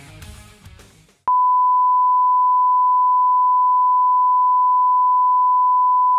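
A rock track fades out over about the first second. Then a steady single-pitch test tone starts abruptly and holds unchanged: the reference tone that accompanies colour bars.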